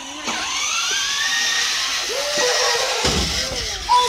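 Small electric motor of a battery-powered ride-on toy quad whining, its pitch rising over the first two seconds as it picks up speed. A wavering lower tone follows in the second half.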